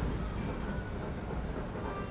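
A faint, steady low rumble of background noise, with no distinct strokes or knocks standing out.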